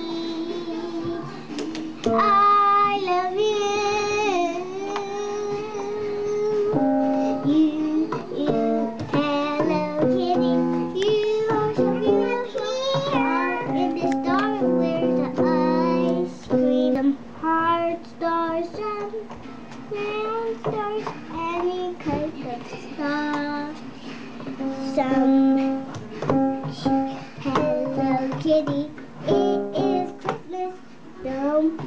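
A young child singing a wavering, made-up tune while notes and note clusters are pressed on an upright piano.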